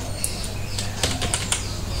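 Steady low electrical hum over background hiss, with a few faint clicks of a computer mouse about a quarter second, one second and one and a half seconds in.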